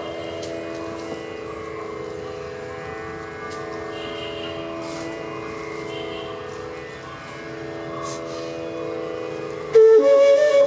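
A steady drone of several held notes sounding on its own while the flutes rest. Just before the end a bansuri comes back in loudly on a held note.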